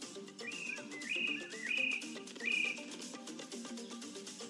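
Background music with a steady run of notes. Over it come four short, high whistled calls, each gliding up into a held note, during the first three seconds; these are the loudest sounds.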